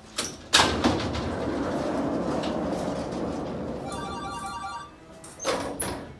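Vertical panel saw starting up and cutting through a wooden board, a loud steady noise that slowly fades away over about four seconds. A short loud knock comes near the end.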